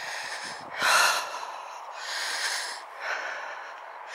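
A person's breathing close to the microphone: a few breaths in and out, the loudest about a second in.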